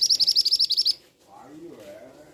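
Male scarlet minivet giving a loud, rapid string of about a dozen high, sharp notes that stops about a second in.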